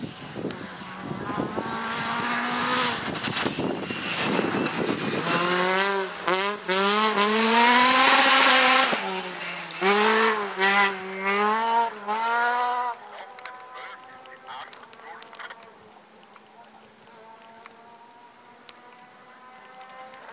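Opel Adam rally car at full throttle on a gravel stage: the engine revs up and drops back many times in quick succession through gear changes, getting loudest as it passes close about eight seconds in, then fading away. Near the end a second rally car's engine is heard faintly and steadily as it approaches.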